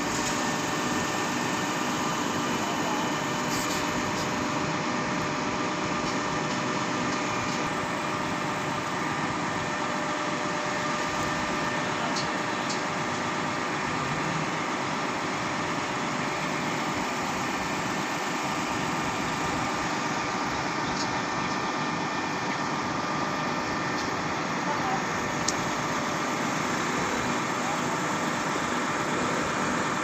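Truck-mounted concrete boom pump's engine running steadily at constant speed while the boom is worked, with a few faint clicks.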